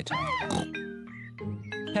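A cartoon pig character gives a short vocal oink or snort, followed by gentle children's background music with held notes.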